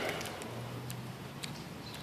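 Faint, irregular clicks from a Nikon DSLR's command dial being turned to lower the ISO setting.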